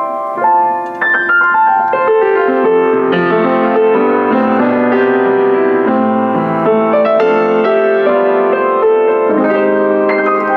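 Kawai CE-7N upright acoustic piano (Japanese-built, about 1982) played with its top lid propped open a little, which makes the sound a little brighter and lets more of the harmonics out. A quick run down the keyboard about a second in, then full, sustained chords.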